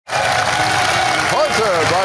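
Studio audience applauding, with a voice starting to speak over it near the end.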